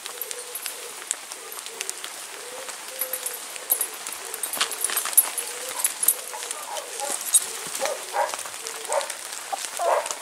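A dog whining in a long, wavering, thin tone that breaks into short whimpers in the last few seconds. Scattered sharp snaps and crackles of twigs and debris underfoot run through it.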